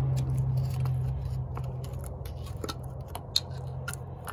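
A flat screwdriver scraping and clicking against the metal cylinder head cup of a Honda 1.7L engine as it is pried out, in scattered light clicks with one sharper snap near the end. A steady low hum runs underneath and eases after the first second or so.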